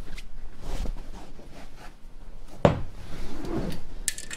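Handling noise as a PVC-tube LED light baton is picked up and moved: scattered rustles and light knocks, with one sharp knock about two-thirds of the way through.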